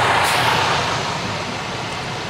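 Steady rush of road and traffic noise from inside a car in highway traffic, with a semi truck right alongside, easing slightly toward the end.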